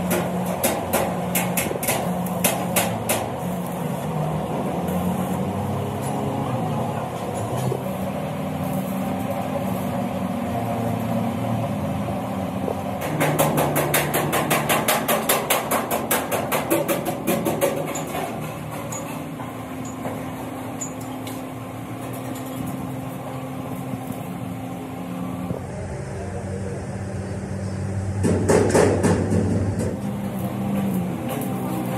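Metal workshop noise: runs of rapid hammer strikes on steel, about four a second, near the start and again for several seconds in the middle, over a steady machine hum. A louder burst of noise comes near the end.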